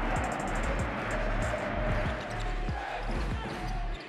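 A basketball dribbled on a hardwood court, a series of short thumps, over a background music track with a steady bass.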